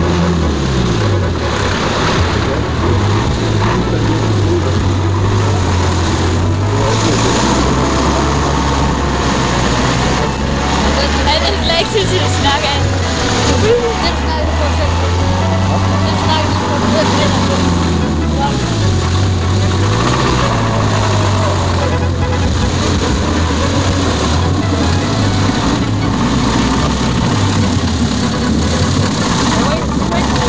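Land Rover 4x4 engine working hard through a deep mud hole, its pitch dropping and climbing again several times as the driver lifts off and revs, with mud and water splashing.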